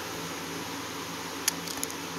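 Steady low hum and hiss of room noise, with a single sharp click about one and a half seconds in and a few faint ticks after it, from a computer mouse being clicked while browsing.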